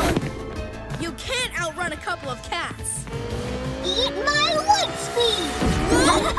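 Cartoon action soundtrack: background music under wordless character cries and exclamations, with a sudden hit right at the start.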